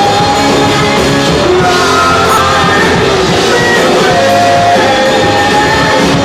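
Live rock band playing loudly: a woman sings long held notes into a microphone over electric guitar and a drum kit.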